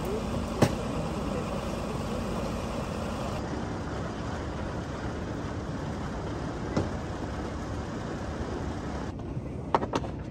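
Steady vehicle and road noise, with faint voices and a few sharp knocks.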